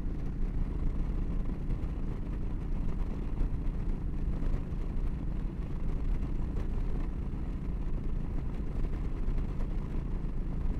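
Yamaha V-Star 1300 V-twin engine running steadily at highway cruising speed, about 70 mph in fifth gear, under a constant low rush of wind noise.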